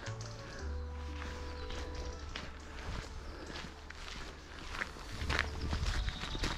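Footsteps on a woodland path, with faint background music and a low rumble that swells in places.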